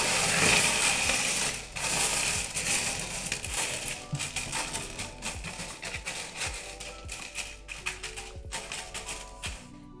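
Expanded clay pebbles (LECA) rattling and clicking against each other and the glass floor of a terrarium as a hand spreads them out, loudest in the first couple of seconds and then quieter. Soft background music plays underneath.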